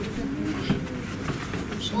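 Indistinct, low voices of people talking quietly in a room, with no clear words.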